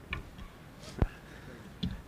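Footsteps of shoes on a hard factory floor, a few light clicks, with one sharp knock about a second in.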